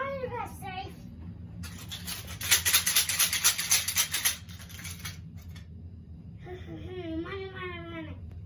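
A young child's play vocalizations: a short gliding wordless cry at the start and a longer wavering one near the end. In between comes a loud hissing burst of about two and a half seconds that pulses rapidly and evenly.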